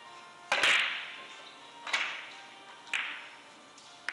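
A three-cushion carom billiards shot: the loudest sharp click, about half a second in, is the cue striking the cue ball. Two more sharp clicks of the balls colliding follow about a second apart, each with a short ringing decay.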